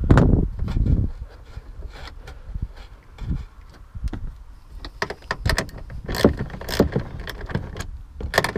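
A metal socket and extension working the taillight's mounting nuts, making irregular small clicks and clanks. There is a heavier knock and rustle in the first second.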